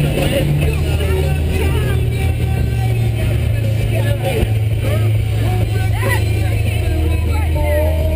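Background music: a song with a bass line stepping between notes and a singing voice over it.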